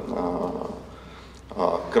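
A man's voice: one held vowel sound fading out over the first half-second or so as he hesitates mid-sentence, a brief lull, then speech resumes near the end.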